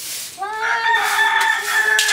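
A rooster crowing: one long, drawn-out call that starts about half a second in and is still going at the end.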